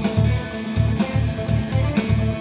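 Band music: electric guitar over a low bass note pulsing about four times a second.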